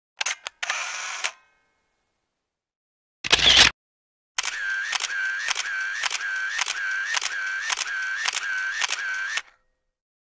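An even run of sharp mechanical clicks, about two a second for some five seconds, with a short whirring tone between each click. Earlier there are a few quick clicks and a brief loud burst of noise, with dead silence between the sounds.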